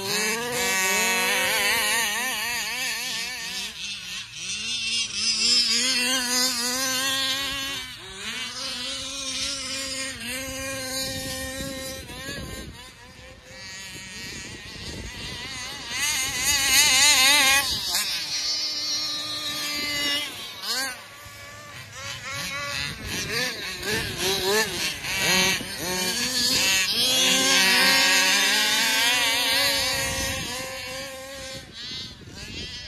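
Two-stroke gasoline engines of large-scale RC cars running hard, their pitch wavering and sweeping up and down as the throttle is worked. They grow louder as the cars pass close, about a fifth of the way in, just past halfway and again near the end.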